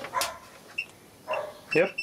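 Short high-pitched beep from a digital multimeter's continuity tester near the end, with voice sounds around it: the probes are touching a connected earth path.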